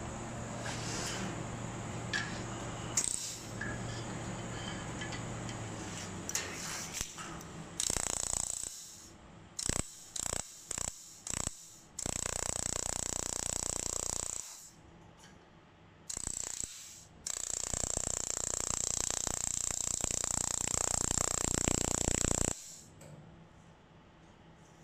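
Handheld fiber laser welding gun firing on a metal sheet: first a few short bursts a fraction of a second each, then longer continuous welds of a few seconds, each with a strong high hiss. Before the welding starts, a steady low hum.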